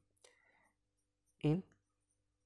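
Pencil scratching faintly on paper as a word is written in an exercise book, followed by a single spoken word about one and a half seconds in.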